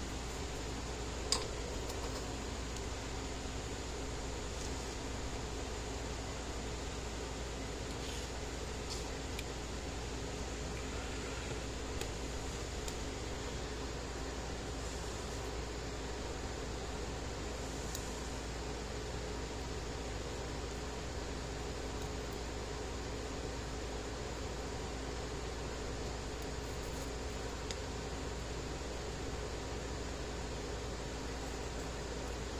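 Steady hum and hiss of a running fan, with one short click about a second in.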